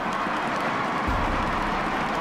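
Loud arena crowd noise and cheering mixed with music over the PA, with a deep bass coming in about a second in.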